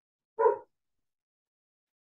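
A dog barks once, briefly, about half a second in.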